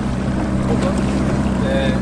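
Small motorboat under way: its engine runs with a steady low hum under the rush of water and wind on the microphone.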